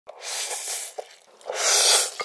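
Loud slurping of instant ramen noodles drawn in through the lips: two long slurps with a short gap between, and a few small wet clicks.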